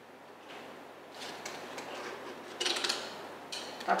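Plastic drinking straws strung on wire rustling and clicking against each other as the straw ornament is handled and bunched up, in a few short bursts that are loudest in the second half.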